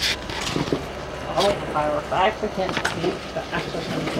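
Faint talk with a few sharp clicks, one at the start, one about a second and a half in, and one near three seconds.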